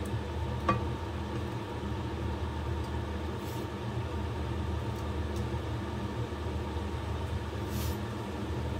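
Steady low hum of a kitchen stove setup with a faint hiss from the stir-fry in the wok. A wooden spatula knocks once against the pan just under a second in.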